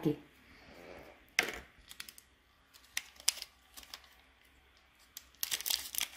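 Handling noise from gloved hands working the small plastic parts of a subcutaneous infusion line: a sharp crackle about a second and a half in, scattered light clicks, and a cluster of them near the end.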